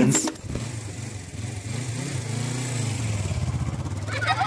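A children's pop song ends abruptly about a third of a second in, followed by a low, pulsing, engine-like rumble that slowly grows louder.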